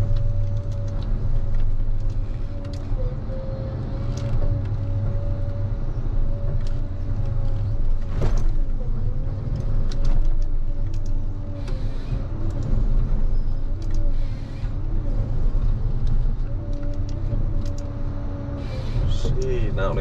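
Ponsse Scorpion King forest harvester's diesel engine running steadily, heard from inside the cab, with a steady whine that dips as the crane and H7 harvester head grab, fell and feed a tree stem. Scattered knocks and crackles come from branches being stripped and the stem handled, with one sharp crack about eight seconds in.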